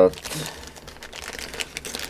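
A small clear plastic zip bag crinkling and rustling in the hands as it is handled and opened, in a run of irregular little crackles.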